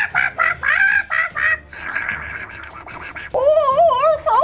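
Chicken-like squawking: a quick run of short squawks over the first couple of seconds, then a longer, wavering cry that starts about three seconds in.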